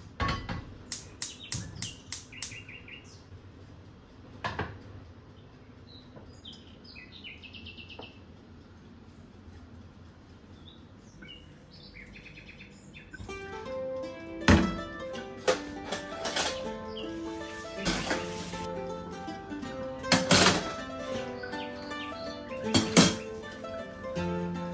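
A gas hob's igniter clicking rapidly for about two seconds, then faint bird chirps. About halfway through, background music comes in and fills the rest, with a few sharp knocks over it.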